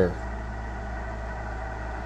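A steady low hum with faint hiss, unchanging throughout.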